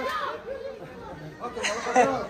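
Several people's voices talking and calling out over one another, with one sudden sharp crack near the end.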